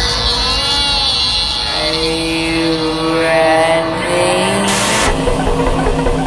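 Electronic dance music in a DJ mix: the beat drops out for a breakdown of gliding, swirling tones and held synth notes. A burst of noise swells up near five seconds, and the beat comes back in.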